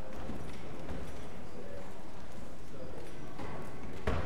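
Footsteps on a hard floor and a low murmur of conversation as a congregation leaves its pews and walks down the aisles.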